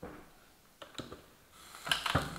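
A few small clicks from the electric sandwich maker's lid being handled, then a sizzle that rises near the end as the lid lifts off the cooking cheese-bread batter.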